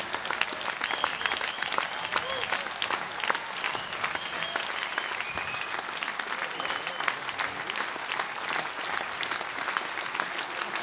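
Concert audience applauding steadily, with high-pitched cheers over the clapping.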